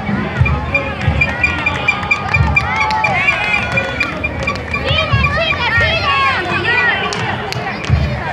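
Crowd of spectators, many of them children, chattering and calling along the roadside. A rapid high-pitched pulsing tone runs for a few seconds from about a second in, with scattered low thumps underneath.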